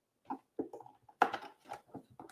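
Handling noise of hardware on a desk as a cable is plugged in: a few short, separate knocks and clicks, the loudest a little over a second in.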